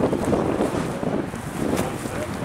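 Wind buffeting the camera's microphone, an uneven rumbling that gusts up and down.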